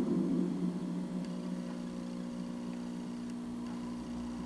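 Steady electrical hum made of several even, unchanging tones, with no other sound over it.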